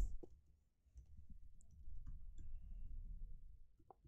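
Faint, scattered clicks of computer keyboard keys being typed, over a low background hum.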